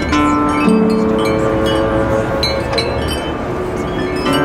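Metal chimes struck at the start and ringing out as a cluster of bright tones. About a second in, bowed cello notes enter and are held beneath them, and the chimes are struck again near the end.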